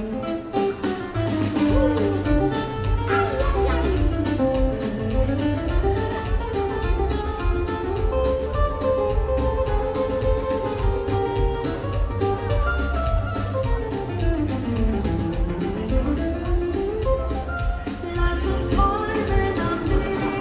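Live band playing an instrumental passage with no singing: a guitar lead over upright double bass and drums keeping a steady beat. The lead line twice glides down in pitch and back up.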